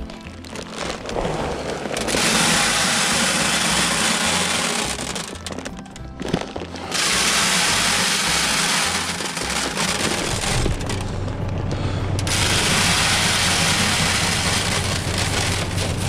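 Seed being poured from a paper sack into a plastic planter hopper, a steady rushing hiss of kernels sliding in. It comes in long pours, the first starting about two seconds in and a second one from about seven seconds, with background music underneath.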